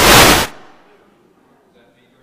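Microphone handling noise: a harsh, very loud burst lasting about half a second as the microphone is knocked or rubbed, followed by quiet room tone.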